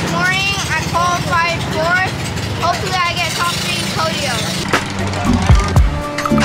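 A high-pitched voice over background music, followed by a few low beats near the end.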